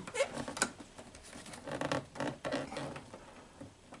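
Light clicks and scraping as fingers work the chrome inner door-handle trim of a Mercedes-Benz W116 door panel loose, with one sharper click about half a second in.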